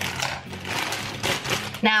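Clear plastic flower sleeve crinkling and rustling in uneven rustles as a bunch of tulips is handled and cut open.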